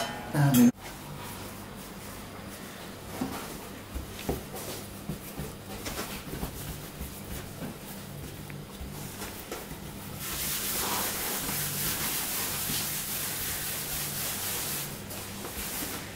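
Hands rolling a ball of brioche dough against a floured worktop: soft scattered taps and rubbing over a low steady hum. A steadier hiss of rubbing runs for about five seconds from around two-thirds of the way in.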